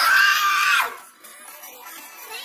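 A person screaming in excitement: one loud, high scream held for about a second, then cutting off to faint music underneath.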